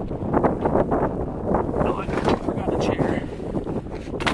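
Wind rumbling on the microphone, with indistinct voices in the background.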